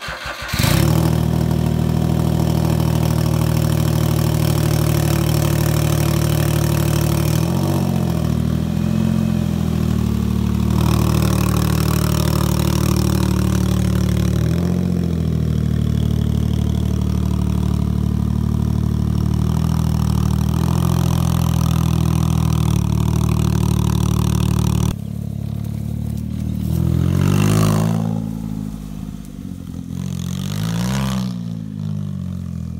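A Smart fortwo's small three-cylinder petrol engine starting and then idling steadily through its modified exhaust with a freshly re-angled muffler. Near the end the note drops, then rises and falls as the car is driven off under throttle.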